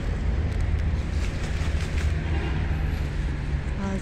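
Steady low outdoor rumble, with a few faint rustles as lettuce leaves are handled.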